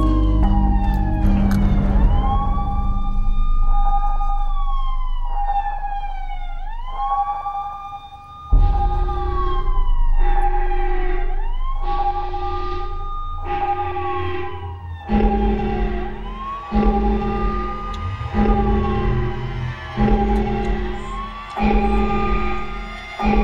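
A wailing siren repeatedly rising, holding and falling, about once every two and a half seconds, over a tense music score. About eight seconds in the music dips, then comes back with a pulsing low beat.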